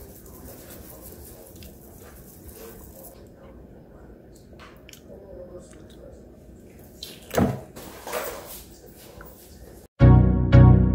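Chopped kale salad being stirred and tossed with a spoon and by hand in a stainless steel bowl: soft, low rustling and scraping of the leaves, with two louder brief sounds about seven and a half and eight seconds in.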